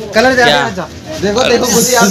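A man's voice speaking or making vocal sounds, with no clear words.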